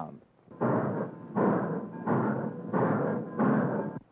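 Steam locomotive exhaust chugging: five steady chuffs about two-thirds of a second apart, starting just under a second in, made by spent steam from the cylinders blasting up the smokestack.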